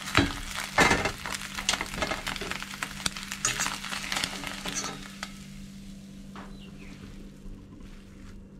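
An egg frying in oil in a stainless steel pan, sizzling and crackling, with a fork scraping and clicking against the pan as the egg is turned. The clicks come thick for about five seconds, then die down to a quieter sizzle. A steady low hum runs underneath.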